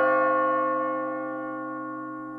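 A bell struck once just before, ringing on with a slow fade.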